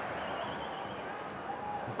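Steady background noise of a football stadium crowd, with a brief faint high whistle near the start.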